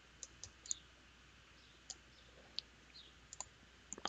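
Faint, scattered computer mouse clicks, about eight over a few seconds, as items are selected in CAD software.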